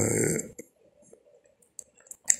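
A man's voice in a recorded voice message trails off on a drawn-out syllable, stopping about half a second in. A pause of near silence follows, broken only by a few faint clicks.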